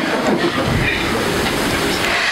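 Audience applauding steadily, with a few voices mixed into the crowd noise.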